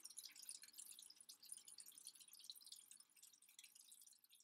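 Faint dripping water: a dense patter of small, quick drips, slowly growing fainter.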